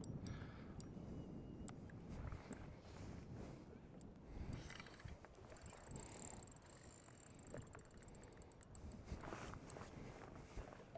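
Spinning reel being cranked against a hooked bass, with a quiet mechanical whir and a quick run of fine drag clicks near the end, over faint wind and water.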